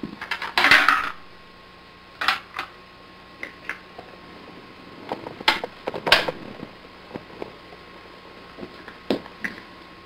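Hard plastic shapes clattering and knocking against a plastic shape-sorter cube: a loud rattle about half a second in, then scattered sharp clicks and knocks.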